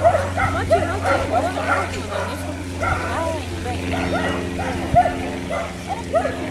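A dog yipping and whining over and over in short calls, with people talking in the background and a steady low hum underneath.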